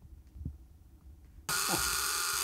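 Quiet room tone with a soft low thump about half a second in; then, about one and a half seconds in, a loud, steady electrical hiss and buzz starts abruptly from a lit Geissler tube's high-voltage supply.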